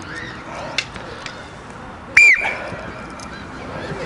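A single short, shrill whistle blast about two seconds in, over the faint sound of players moving about, with a couple of light knocks before it.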